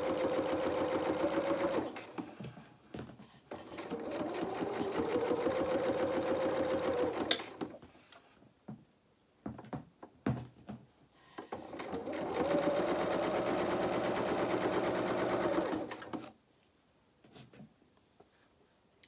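Electric domestic sewing machine stitching a seam in three runs of a few seconds each, the motor whine climbing as it speeds up at the start of each run. Short pauses between the runs hold a few small clicks from handling the work, with a sharp click as the second run stops.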